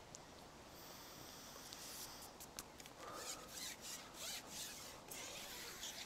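Faint rubbing and rasping of a carbon fishing pole being pushed out hand over hand, in short irregular strokes from about two seconds in.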